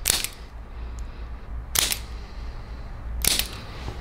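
Hand-held spring-loaded chiropractic adjusting instrument firing against the side of the foot. It gives three sharp clicks: one at the start, one about two seconds in and one a second and a half later.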